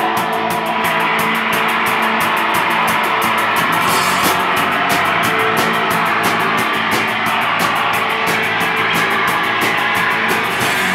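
A rock band playing live: electric guitars over drums keeping a fast, steady beat, loud and continuous.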